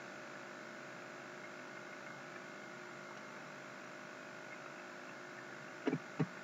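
Faint steady electrical hum with a light hiss: the background room tone of the recording, with a brief short sound right at the end.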